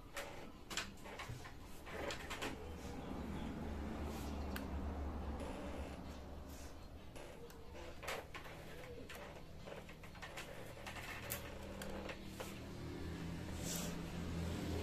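Hands handling and pressing insulating tape on a TV's T-con board and flat cable: scattered small clicks and rustles, over a steady low hum.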